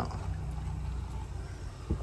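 Sparkling wine poured from the bottle into a tumbler, a steady pour with the fizz of rising foam.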